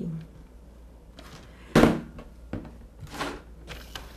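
Handling of a Toke e Crie sliding paper trimmer on a tabletop: one sharp thunk a little under two seconds in, then softer knocks and a brief scrape about three seconds in, as the cutting head is taken in hand and moved along its rail.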